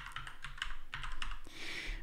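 Typing on a computer keyboard: a quick run of keystrokes entering the word "pulseaudio" into a search box.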